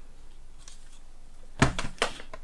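A short clatter of knocks about one and a half seconds in, as a decorated mixed-media craft piece is handled and set down on the work table. Before it there is only low room hiss.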